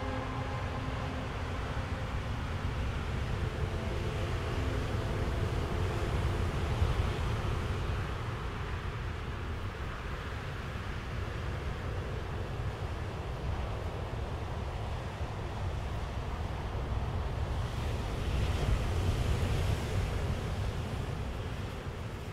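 Steady rushing of sea surf and wind with a low rumble, swelling slightly now and then. The last held notes of music die away in the first second or two.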